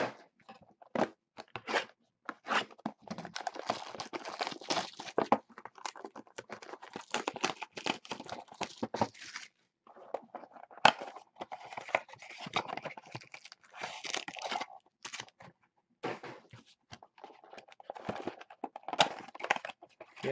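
Plastic shrink wrap crinkling and tearing as sealed trading card boxes are unwrapped and card packs ripped open: irregular crackling with two short pauses and a few sharp clicks.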